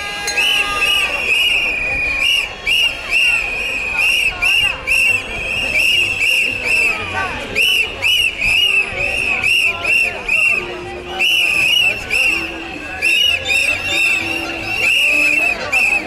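Protest crowd blowing many whistles in short, shrill blasts that repeat over and over, over the din of marchers' voices.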